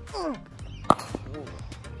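A cricket bat striking the ball once, a single sharp crack about a second in, followed by a smaller knock.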